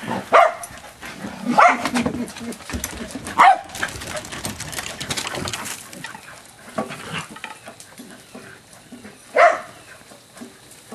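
A dog barking in play: four sharp single barks, three in the first few seconds and one near the end.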